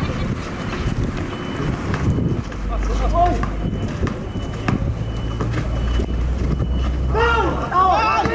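Outdoor basketball game on a concrete court: players calling out to each other over scattered knocks of the ball and shoes on the court. A low steady rumble sets in about two seconds in, and voices grow busier near the end.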